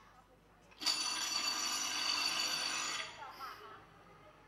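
Electric race bell ringing for about two seconds, starting about a second in and cutting off suddenly, signalling that the greyhound race is about to start.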